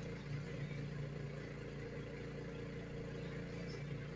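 Steady low mechanical hum with a few constant low tones and a faint hiss, from a window air conditioner running.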